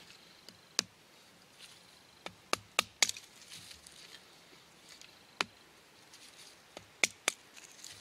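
Short, sharp wooden knocks and clicks, about eight, at irregular intervals and some in quick pairs, as cut pieces of dry hazel and a knife are handled and set down.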